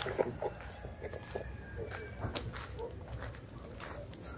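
Faint, scattered dog barks with a few bird calls.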